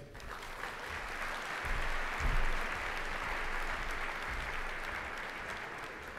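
Audience applauding, swelling over the first couple of seconds and then slowly tapering off, with a few low thuds under it.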